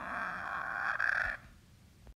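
Short creature growl voicing a toy raptor dinosaur, a steady rasping call that holds for about a second and a half, then drops away faintly.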